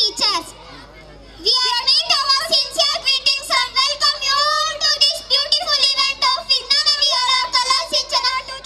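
A young girl speaking in a high child's voice, with a brief pause about a second in.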